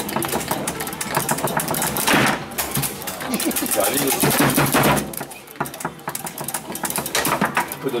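Foosball table in play: rapid, irregular clacking of the ball, the plastic players and the rods.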